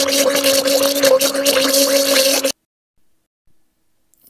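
Electric blender running, churning a thick milk-and-butter mixture: a steady motor hum under a sloshing, churning wash of noise that cuts off suddenly about two and a half seconds in.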